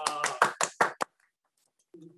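A few people clapping their hands, about six claps in the first second, then cut off abruptly.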